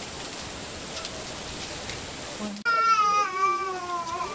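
Steady background hiss, then about two-thirds of the way in a single long, drawn-out call begins suddenly and falls slowly in pitch.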